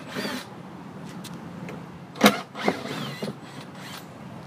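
Screws being taken out of a wooden hive wall mount and the mount worked loose by hand: light creaks and clicks, with a sharp knock a little over two seconds in and a smaller one just after.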